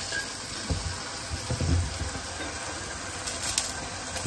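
Lachha paratha frying in ghee in a non-stick pan, a steady sizzle.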